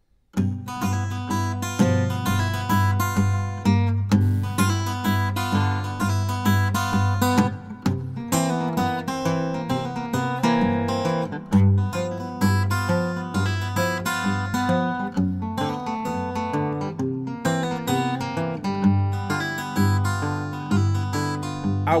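Acoustic guitar playing a fingerpicked old-time blues intro: steady bass notes on the beat under a picked melody. It starts about half a second in, and a man's singing begins at the very end.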